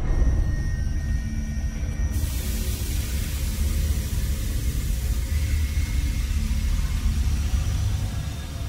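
A deep, steady rumbling drone under faint held music tones, the kind of dark sound bed that opens a show segment; a high hiss comes in about two seconds in and stays.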